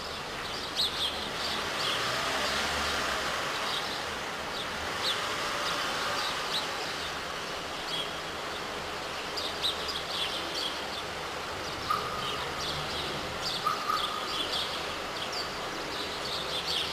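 Small birds chirping in short, repeated calls over a steady outdoor background hum with a low rumble.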